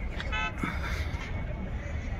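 A single short horn toot, high-pitched and lasting a fraction of a second, about half a second in, over a steady low background rumble.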